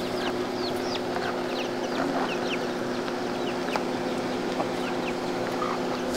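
Birds chirping in many short, falling calls, with chickens clucking, over a steady low hum.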